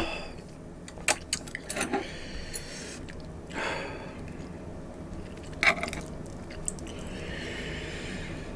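Metal chopsticks clicking and tapping against dishes and a wooden board: a quick run of small clicks in the first few seconds, then one sharper click a little past the middle. A short breath sounds in between.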